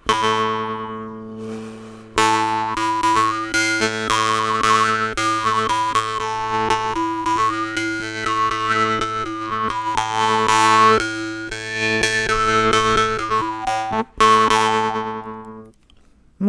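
A jaw harp (vargan) played with a steady low drone and a melody of overtones gliding up and down above it. After a single twang at the start, fast, even plucks begin about two seconds in, with a brief break near the end before a last ringing note fades.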